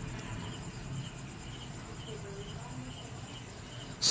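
Crickets chirping steadily at about two faint chirps a second, over a low background hum.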